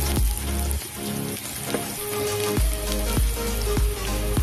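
Garlic and onion sizzling as they sauté in oil in a wok, under background music with a steady beat.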